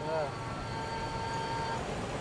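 A pause in a chanted recitation: low steady background rumble and hiss through the sound system. It opens with a brief faint voice, and a faint steady tone holds until near the end.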